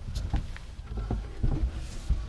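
Handling and movement noise as someone moves about inside a tent trailer: a low rumble with a few light knocks and clicks.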